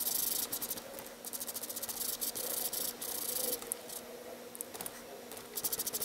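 Jumbo foam sponge dauber rubbed over paper and card stock in quick repeated strokes, a dry scratchy brushing that comes in bursts with short pauses as ink is worked onto the card.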